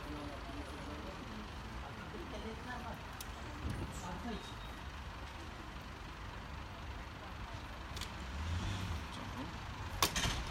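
Steady outdoor traffic noise, with a few faint clicks and knocks from a folding electric bike's aluminium frame, handlebar stem and latches being handled as it is unfolded, and a sharper click near the end.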